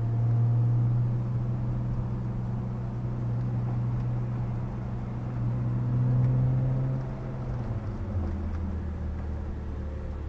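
Car engine and road noise heard from inside the cabin while driving: a steady low hum that drops to a lower pitch about eight seconds in.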